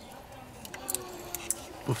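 A few light metallic clicks and scrapes of a screwdriver working the wire spring clip on a fuel-injector electrical connector.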